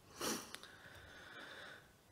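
A man's short sniff, a quick breath in through the nose, picked up by the lectern microphone, followed by a faint click and a faint steady high tone.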